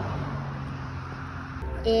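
Distant train horn: one steady low note held for about a second and a half, then stopping, over a low outdoor rumble.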